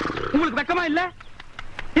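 Donkey braying: a harsh, rough call lasting about a second.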